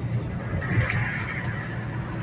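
Inside a semi-truck cab at highway speed: steady low engine and road drone, with a sharp click about a second in.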